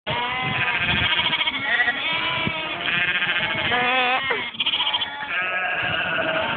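A flock of sheep bleating, many calls overlapping one after another.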